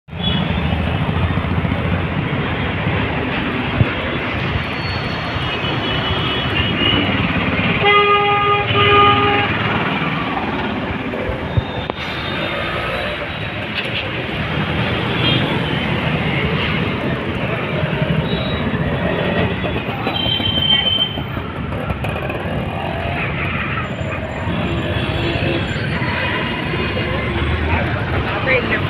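Busy street traffic: a steady mix of engine and road noise from passing auto-rickshaws and cars. Vehicle horns toot several times, with one longer horn blast about eight seconds in.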